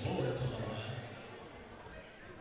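A basketball bouncing on a hardwood gym floor as the shooter dribbles at the free-throw line, under indistinct voices in the gym.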